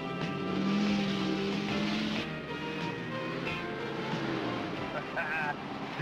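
Background music over the engine and driving noise of a Ford Bronco II SUV crossing rough off-road ground, the driving noise thickest in the first two seconds. A short voice is heard near the end.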